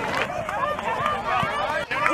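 Many voices calling out and shouting at once from the sideline and field of a youth soccer match, overlapping and indistinct, with no single clear word.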